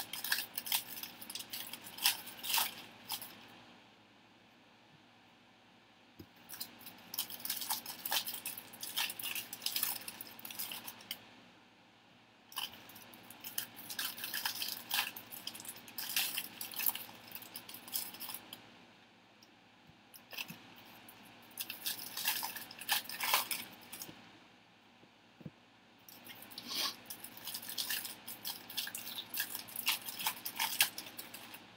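Trading cards and crinkly plastic pack wrapping being handled, giving bursts of crackling and light card clicks that each last several seconds, with a few short quiet pauses between them.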